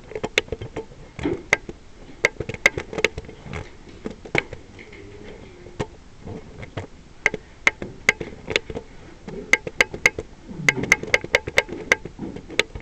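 Buttons on a document camera's control panel being pressed again and again, sharp clicks in irregular runs that come thickest near the end, as its setup menu is stepped through to rotate the image.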